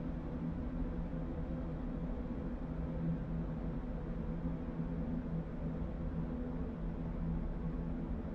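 A low, steady ambient drone with held tones over a deep rumble: a dark background music bed.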